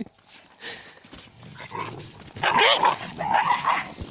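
Shepherd dogs playing, barking and yelping, loudest in two bursts in the second half.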